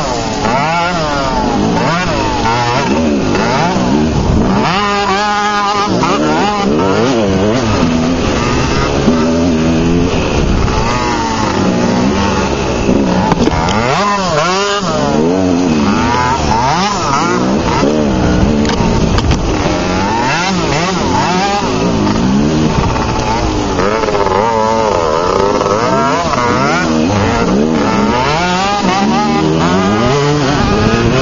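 Off-road dirt bike engines revving up and down continuously through a tight trail, the pitch rising and falling every second or two with throttle changes.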